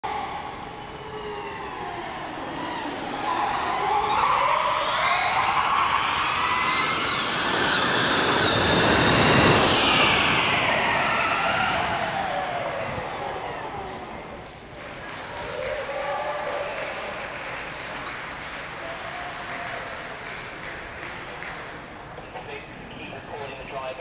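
Modified Formula E Gen3 electric racecar at full acceleration, its electric drivetrain giving a high whine that climbs in pitch to its loudest about ten seconds in, then falls away as the car goes past. A quieter whine returns about fifteen seconds in.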